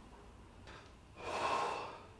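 A man's heavy, distressed breath: a faint one, then one loud rushing breath that swells and fades in well under a second, just past halfway.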